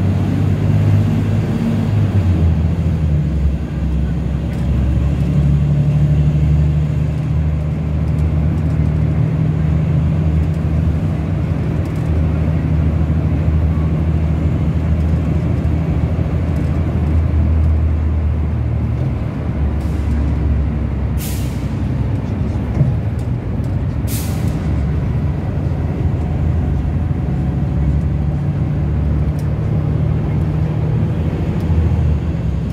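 Inside the cabin of an articulated rapid-transit bus: a steady low engine and drivetrain drone as the bus runs. Past the middle come two short hisses of compressed air a few seconds apart, from the air brakes.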